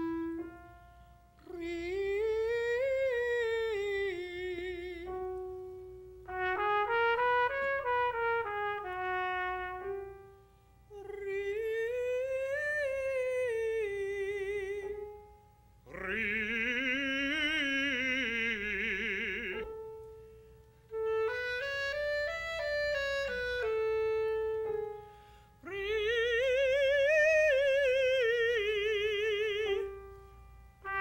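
A clarinet and a trumpet playing a series of short melodic phrases, each rising and falling over about three to four seconds with brief pauses between, some held notes with vibrato; in one phrase, about two-thirds of the way in, two lines sound together.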